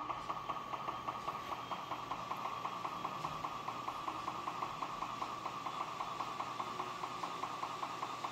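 Intraoral dental scanner running while it scans the teeth for a digital impression: a steady high hum with a fast, even pulsing.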